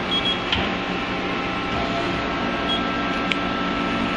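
Steady hum of a CNC lathe, with a few short high beeps and a couple of light clicks as keys on its control panel are pressed.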